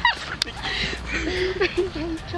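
Several people's excited yelps and short shouts, with wind rumbling on the microphone and one sharp click about half a second in.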